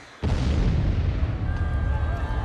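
A short hush, then a sudden loud boom on the concert stage about a quarter second in, with a deep rumble that carries on after it.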